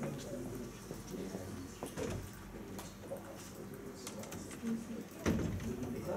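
Indistinct murmur of voices in a classroom, with a single sharp knock a little after five seconds in.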